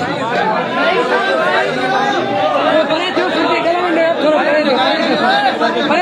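Many men talking over one another at once: crowd chatter.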